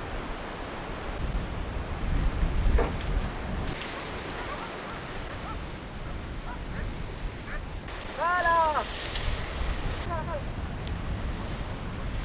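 Wind on the microphone over the surf of the sea below, a steady low rush. About eight seconds in comes one short call whose pitch rises and falls, followed by a fainter echo of it.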